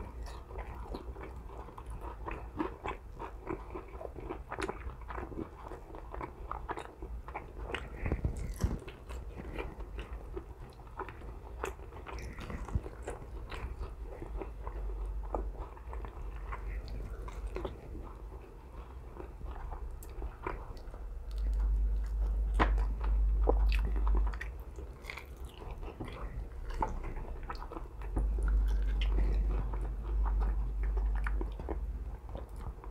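A person chewing and biting into a sauced chicken wing up close: many small wet mouth clicks throughout. A low hum underneath grows louder twice, about two-thirds through and near the end.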